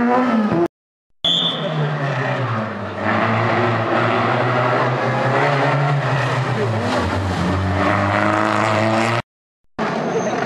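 Renault Clio rally car engines running hard as they pass on a tarmac stage. The engine note holds fairly steady, then rises near the end. The sound drops to silence twice for about half a second, at edit cuts.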